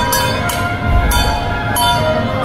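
Procession music: sustained, horn-like tones held over drum beats, with cymbal or gong crashes about every half second.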